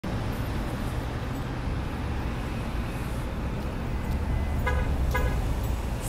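Steady low rumble of traffic, with two short car-horn toots about half a second apart near the end.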